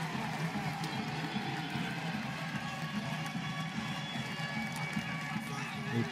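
Steady stadium ambience: indistinct voices of a crowd mixed with faint music, with no single loud event.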